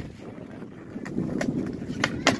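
Wind rumbling on the microphone over a skateboard on concrete, with two sharp clacks of the board about a second and a second and a half in as the skater pops an ollie.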